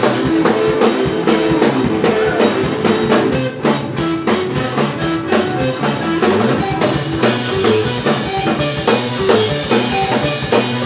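Live math rock from a two-piece band: an electric guitar playing shifting picked notes over busy drum-kit playing. Loudness dips briefly about three and a half seconds in.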